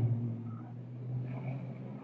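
Pause between sentences in an old lecture recording: a steady low hum with faint hiss from the recording, and a few faint indistinct sounds about a second in.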